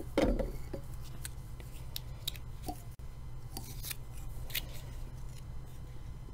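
Fly-tying handling noise at the vise: a soft bump just after the start, then scattered small clicks and snips as thread and rib material are worked on the hook.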